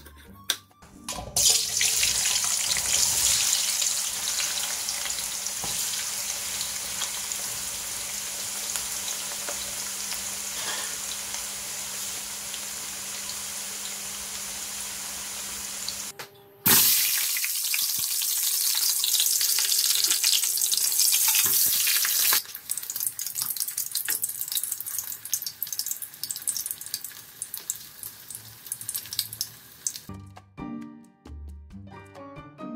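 Potato chips and a pork knuckle deep-frying in hot oil in a wok: a steady sizzling hiss that starts suddenly a second or so in. It breaks off briefly about halfway, comes back louder, and over the last several seconds turns to sparser crackling and spattering.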